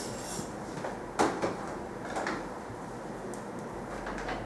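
A few light clicks and knocks from handling, the loudest just over a second in, over a steady low background.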